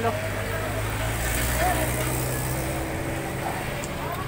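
A motor vehicle's engine running with a steady low hum, over street noise.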